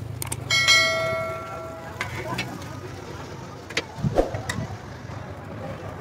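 A metal spatula clanks against metal cookware on a street-food griddle, ringing for about a second and a half. Scattered clicks and knocks of the spatula follow as the fried liver is scooped onto the bun.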